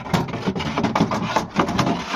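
Close handling noise: continuous rubbing and rustling with many small knocks.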